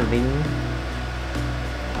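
A steady low hum with faint background music; a man's voice trails off at the very start.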